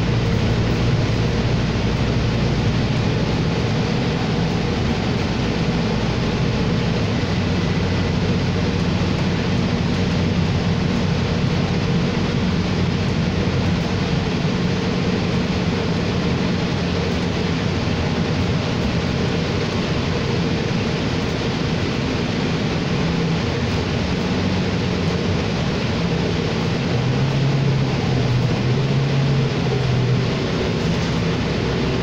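Cabin noise inside a New Flyer XD40 diesel city bus under way: a steady engine drone mixed with road noise. The engine note shifts near the end.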